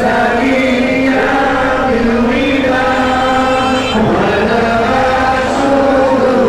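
Male voices singing a melodic devotional chant in long, drawn-out phrases, the pitch gliding between held notes.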